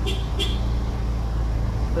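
Steady low rumble of a motor vehicle engine running nearby in street traffic, with two short hisses just after the start.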